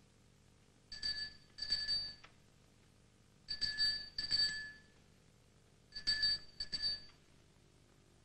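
Travelling doctor's hand bell shaken in short groups of two or three bright ringing jingles, about every two and a half seconds: the call that announces the itinerant physician in the street.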